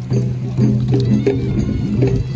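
Traditional Khasi dance music for the Shad Suk Mynsiem dance: a steady drumbeat under a short melody repeated over and over.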